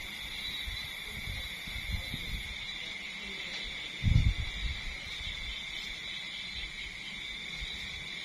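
Night insects trilling steadily in a continuous high drone, with a low rumble underneath and a single dull thump about four seconds in.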